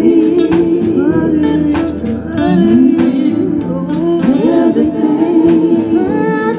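Live gospel-style inspirational song: women's voices singing together over electric bass, guitar and drums, with a steady beat of about two strikes a second.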